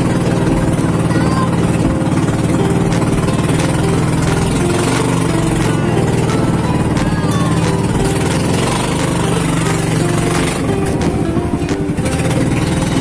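The engine of a motorized outrigger boat running steadily at cruising speed, with music playing over it.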